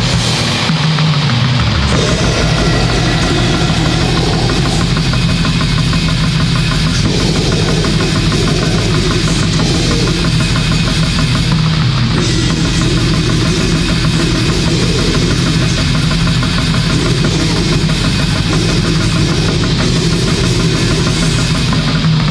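Bestial black metal: fast, dense drumming over distorted guitar and bass, a loud, unbroken wall of sound.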